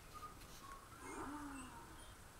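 A baby's brief, soft coo about a second in, faint and high-pitched.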